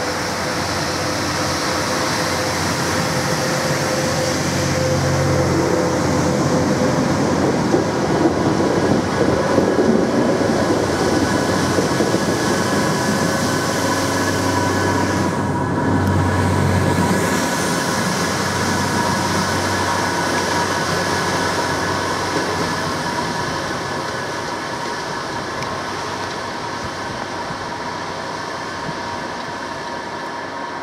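Two Balfour Beatty dynamic track stabilizers, self-propelled diesel track machines, running past beneath the bridge. The sound builds to its loudest from about 8 to 17 seconds in, then fades as they move away, with a steady high whine through the second half.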